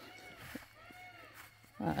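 Two faint, distant animal calls, each rising and then falling in pitch.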